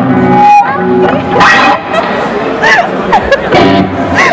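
Electric bass and guitar played loosely at a band soundcheck: a few low held notes through the amps, followed by voices talking over the stage sound.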